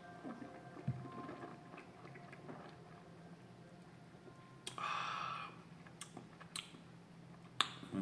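Faint mouth sounds of a taster working a last sip of wine: small wet clicks and smacks, a soft knock about a second in as the glass is set down on the tablecloth, and a short rush of air through the mouth about five seconds in.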